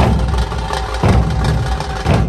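Dhol-tasha ensemble drumming: large barrel dhol drums strike heavy low beats about once a second while tasha drums rattle rapid sharp strokes over them.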